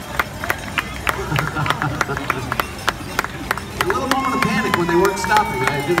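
Scattered hand clapping from a street crowd of spectators, a quick irregular run of sharp claps over general crowd chatter.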